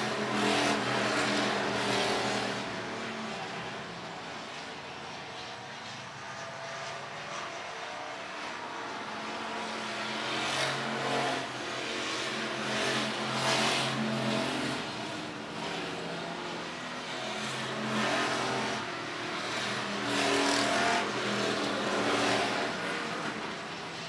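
Engines of IMCA hobby stock race cars running laps on a dirt oval. The sound swells as the cars pass near and fades as they go around the far end, with louder passes about halfway through and again near the end.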